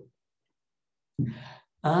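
Silence for about a second, then a man's short breathy sigh, followed near the end by the start of a drawn-out "ah".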